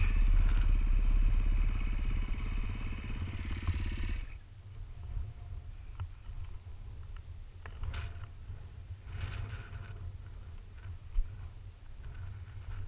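Dirt bike engine idling, then cut off abruptly about four seconds in. After it stops, wind rumbles on the helmet-mounted microphone, with a few small clicks and one sharp knock near the end.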